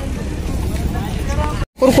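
Open-air market background: a steady low rumble with faint distant voices. It breaks off in a sudden brief dropout near the end.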